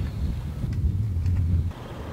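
A low, rough rumble that cuts off abruptly near the end.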